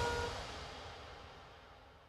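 TV programme's bumper theme music fading out steadily to near silence.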